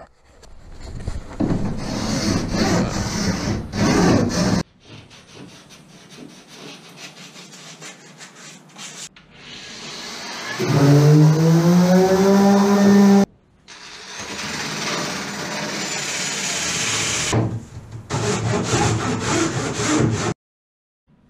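Hand strokes of an auto body putty file scraping and shaving cured epoxy along a plywood boat's sheer edge. Around the middle, a hand-held power sander's motor whines up in pitch as it sands the epoxy-coated hull bottom, the loudest sound, followed by more scraping and sanding.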